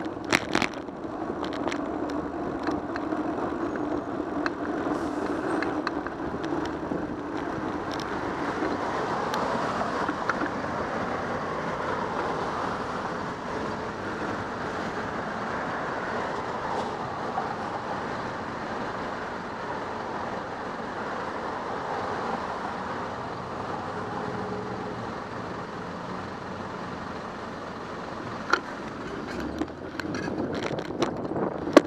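Steady city traffic noise from cars and trucks on the street, with a few sharp clicks about half a second in.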